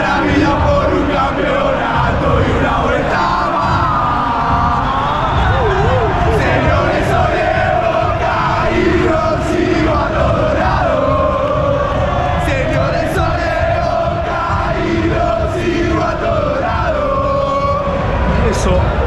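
Large stadium crowd of football fans singing a chant together, loud and continuous.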